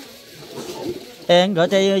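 A loud, steady-pitched voice-like call or hum starts just over a second in, held in short notes with slight bends in pitch, over faint water running from a hose.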